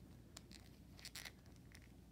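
Near silence: room tone, with a few faint clicks and scrapes of hands handling a plastic action figure as its knee joint is bent.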